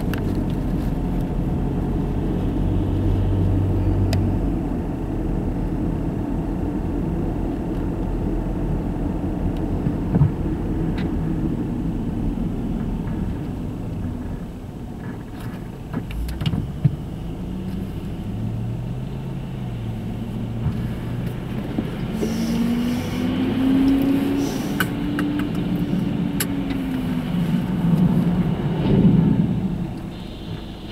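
Inside a moving car: steady road and engine rumble, with a few short knocks. In the second half the engine note rises, holds, then falls away as the car speeds up and slows for the light.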